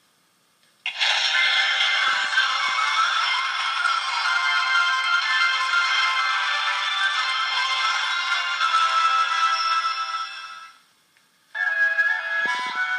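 Electronic, ringtone-like music with no bass, starting about a second in and cutting off near the end, then a short gap before another tune begins.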